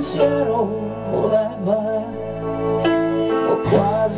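A band playing live: acoustic guitar with a melodic lead line that slides between notes over steady low notes.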